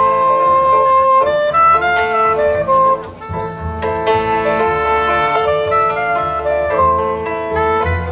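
Soprano saxophone playing a jazz solo: a long held note for about the first second, then a moving melodic line, over double bass.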